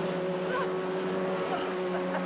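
Motorboat engine running at speed with a steady drone, under the rush of water and spray from the hull.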